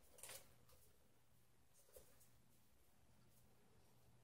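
Near silence: room tone, with two faint, brief soft noises, one just after the start and one about two seconds in.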